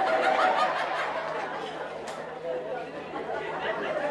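A live audience laughing and chattering, many voices overlapping and slowly dying down.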